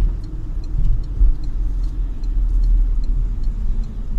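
Low, steady rumble of a car's engine and tyres heard inside the cabin while driving along a city street. Faint ticking, about two or three a second, from the right turn indicator.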